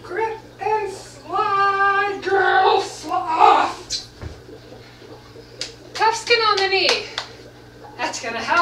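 A woman's wordless vocalizing: a few short sung notes, a note held for about half a second, then strained sounds and a falling cry near the end. A few sharp taps come in between.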